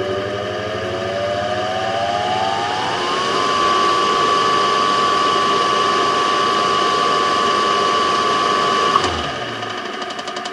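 3 HP Lancashire three-phase 415 V motor, running on single-phase 230 V through a capacitor, slowly winding up to speed. Its whine rises in pitch for about three seconds, then holds steady. Near the end there is a click and the whine cuts off suddenly.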